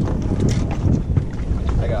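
Steady low wind rumble buffeting the microphone in an open boat, with a few light knocks of gear being handled. A man's voice starts just before the end.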